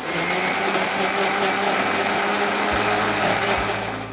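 Electric countertop blender running at speed, its blades chopping mango chunks and water into puree, with a steady motor hum under the whirring; it eases off near the end.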